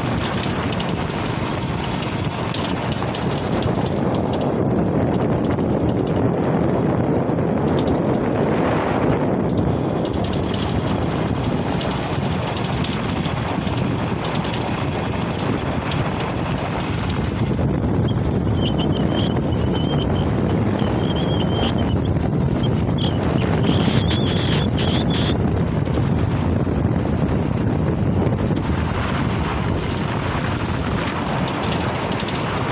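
Steady wind rush on the microphone and road noise from riding along a paved road, with no clear engine note. Faint high chirps come through about two-thirds of the way in.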